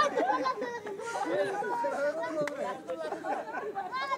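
Many children's and onlookers' voices chattering and calling out over one another, with a brief sharp click about two and a half seconds in.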